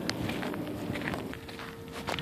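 Footsteps on dry dirt and gravel: scattered scuffing and crunching steps. A faint steady hum comes in about a second and a half in and rises slightly in pitch.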